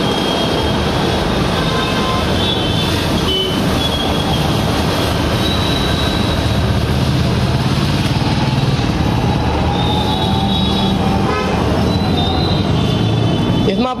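Three-piston high-pressure washer pump, belt-driven by its electric motor, running steadily with the water jet spraying hard. Vehicle horns toot a few times over it.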